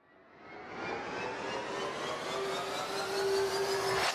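A rising whoosh sound effect: a swell of noise with several tones gliding steadily upward, building out of silence over the first second and ending in a sudden hit at the very end.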